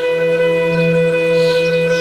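Meditation music: a flute holding one long, steady note over a low sustained drone.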